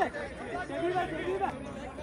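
Several people's voices calling out and chattering, loudest in the first second and a half.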